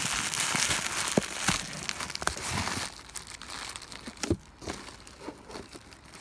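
Bubble wrap crinkling as a wrapped bundle is handled and lifted out of a cardboard box by gloved hands: dense and loudest for the first half, then sparser, quieter crackles and a few small clicks.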